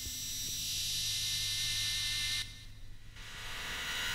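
Hissing synthesizer noise swelling up, cutting off suddenly about two and a half seconds in, then swelling again: the quiet opening of a synthpop track before the full beat comes in.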